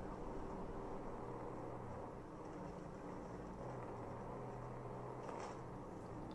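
Steady engine and road drone from a pursuing police patrol car, picked up by its dash camera, with a short burst of noise near the end.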